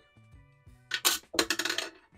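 Small steel marble clattering along the metal wire rails of a battery-powered kinetic desk toy just switched on, in two quick bursts of rapid clicks about a second in.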